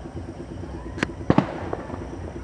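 Firecrackers going off: one sharp bang about a second in, then two more in quick succession and a fainter pop, over a steady low pulsing hum.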